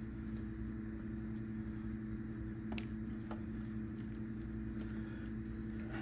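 A steady, even machine hum with two constant low tones over a low rumble, with a couple of faint light clicks partway through.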